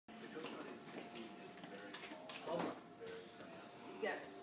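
Indistinct voices in a small room over faint background music, with one louder voice-like sound about two and a half seconds in.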